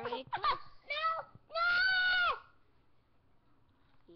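A young child's high-pitched voice: two short squeals, then one long, loud held note about a second and a half in.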